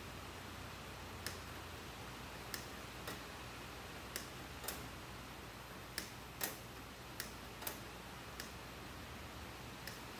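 Hand sheet-metal shears (left/right-cut snips) cutting sheet metal in short bites: about a dozen sharp snips, irregularly spaced, roughly one a second, over a faint steady shop background.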